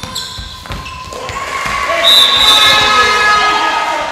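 Handball game in a sports hall: the ball thumps on the floor a few times early on, then voices rise in shouting about halfway through, with a shrill high tone over them, before fading.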